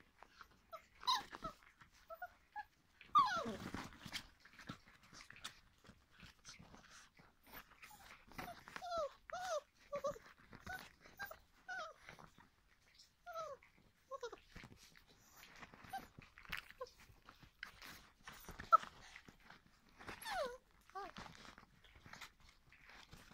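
Young puppies whining and yelping in short high calls: a longer falling cry about three seconds in, then a run of quick whimpers in the middle and more near the end. Sharp clicks and scuffles of the puppies playing and chewing run between the calls.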